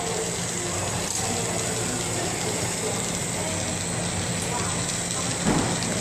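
Glassworking bench torch burning with a steady hiss while borosilicate glass is heated in the flame, with a low steady hum underneath.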